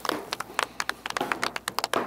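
A rapid, irregular run of light clicks and taps, a dozen or more in two seconds, over faint room hiss.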